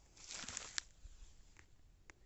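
A short, faint rustle ending in a sharp click close to the microphone, as mustard stalks and pods are handled beside the phone; a few faint ticks follow.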